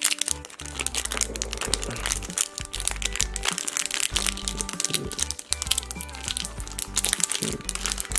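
Foil trading-card booster pack wrapper crinkling and crackling irregularly as it is handled and worked open by hand, over steady background music.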